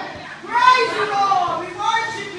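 Indistinct speaking voices, words unclear, quieter at first and picking up about half a second in.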